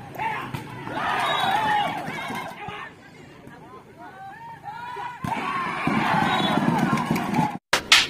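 Spectators at an outdoor volleyball match shouting and cheering, swelling in two loud bursts. There is a sharp smack about five seconds in. The sound cuts off abruptly near the end.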